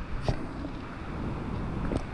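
Wind buffeting the camera microphone: a steady low rumble, with one short knock about a quarter of a second in.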